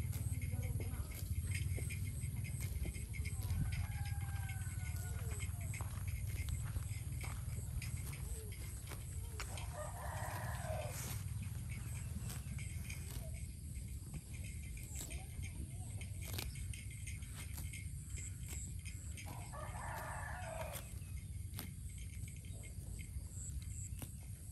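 A rooster crows twice, about ten seconds apart, over a steady low rumble.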